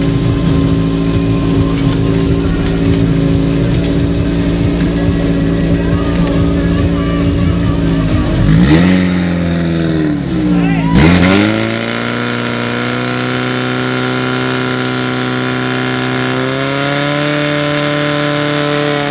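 Portable fire pump engine running flat out. About halfway through, its revs dip and climb back twice, then it settles at a steady note under load while the hoses deliver water to the nozzles.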